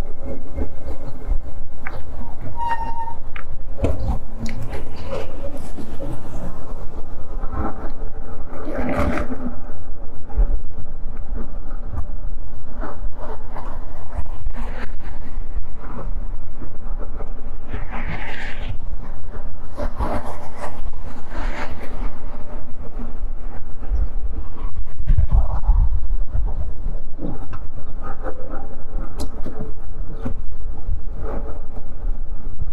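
Wind buffeting the microphone and tyre rumble from an e-bike riding along a paved path, with car traffic passing on the road alongside. Occasional short knocks come from the bike rolling over bumps.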